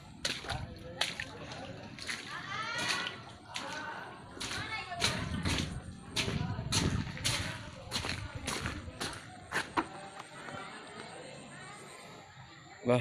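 Irregular sharp splashes and knocks in a shallow, muddy puddle, about a dozen short strikes with some sloshing in between.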